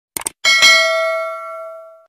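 Subscribe-animation sound effects: a quick double click, then a bell chime struck about half a second in, ringing with a few clear tones and fading away over about a second and a half.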